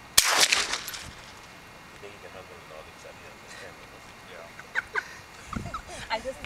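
A single loud rifle shot from a scoped rifle, a sharp crack just after the start that rings away over most of a second. Faint voices follow near the end.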